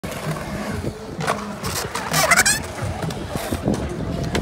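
Skateboard wheels rolling over a concrete skatepark bowl, a steady rumble with scattered clicks and knocks. A brief high-pitched sound that glides in pitch comes about halfway through and is the loudest moment.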